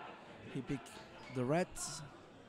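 A man's voice calling out briefly: two short syllables, then a louder drawn-out one whose pitch rises and falls, ending in a short hiss.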